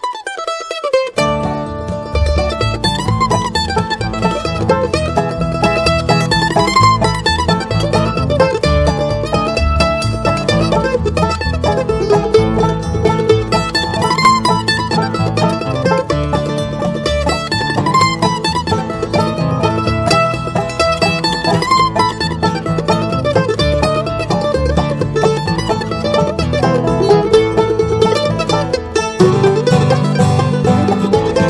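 Instrumental mandolin tune in bluegrass style, a quick picked melody over a steady strummed rhythm, starting about a second in.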